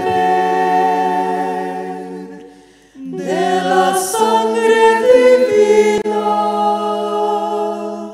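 A cappella choir singing slow phrases of long held notes. One phrase fades out about two and a half seconds in, and a new one begins about three seconds in and fades away near the end.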